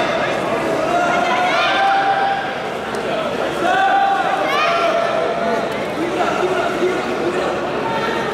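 Many overlapping voices of onlookers and corner coaches shouting and talking at once, with a few loud calls rising and falling in pitch about two and four seconds in.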